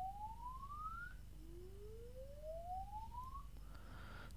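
A Samsung phone's earpiece receiver playing its diagnostic test tone, a faint sweep rising in pitch. One sweep ends about a second in, and a second one climbs from low to high, stopping shortly before the end.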